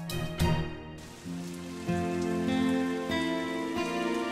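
Heavy rain pouring steadily, starting about a second in, under background music with long held notes.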